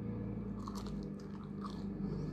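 Close-miked biting and chewing of a seasoned French fry, with short sharp crunchy bite sounds about half a second in and again near the end, over a steady low hum.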